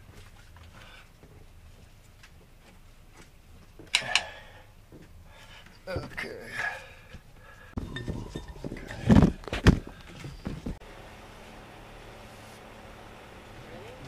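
Scattered knocks and clunks of hand work on a marine diesel engine's alternator belt and pulleys, with a cluster of heavy thumps, the loudest two about nine to ten seconds in.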